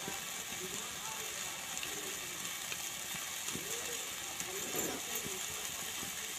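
Half-cooked brinjal and tomato pieces with spices sizzling steadily in a metal kadhai, with a spatula faintly scraping as it stirs them.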